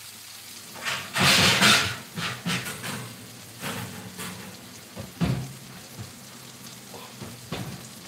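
Garlic mushrooms sizzling faintly in a wok just taken off the gas flame. A loud rushing hiss comes about a second in, and a few short knocks and clicks follow.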